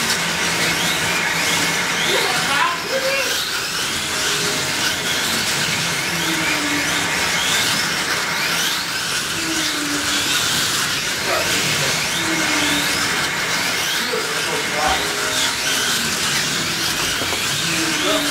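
Several electric slot cars with Rush 36/38k-class motors racing around the track: a steady high motor whine with quick rising and falling pitch sweeps over and over as the cars speed up and slow down. Voices chatter underneath.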